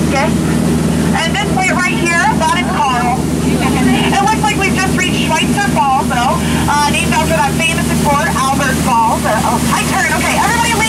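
A voice talking through the boat's loudspeaker, over a steady low hum from the tour boat's motor.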